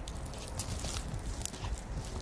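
Footsteps and rustling on wet grass and mud as dogs move about on a leash, with a few faint scuffs and a steady low rumble underneath.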